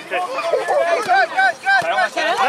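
Young children's high voices chattering and calling over one another.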